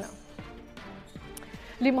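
Quiet background music bed with a regular run of low thumps, a couple a second, heard in a pause in a woman's speech; her voice comes back near the end.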